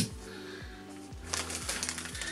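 Calm background music with steady sustained notes. A sharp knock comes at the very start, and a light rustle of plastic packaging comes in the last second as packs of freezer bags are handled.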